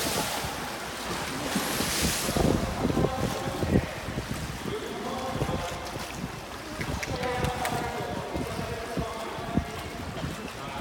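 Pool water splashing and sloshing as an orca swims hard through it. The splashing is loudest right at the start and again about two seconds in.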